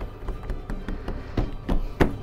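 Soft taps, a few a second, of fingertips pressing and dimpling bread dough flat on a metal baking tray.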